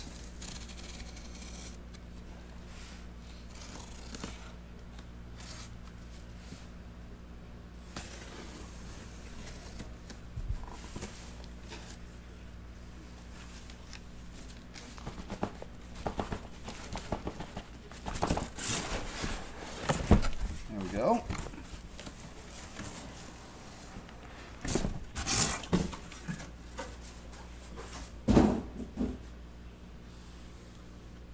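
A cardboard shipping case being opened and its contents handled: irregular bursts of cardboard scraping, rubbing and tearing in the second half, over a steady low hum. Near the end comes the rustle of shrink-wrapped boxes being moved.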